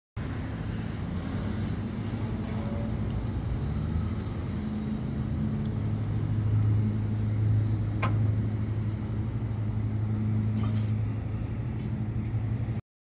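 Steady low motor hum that grows louder after about six seconds, with one sharp click about eight seconds in.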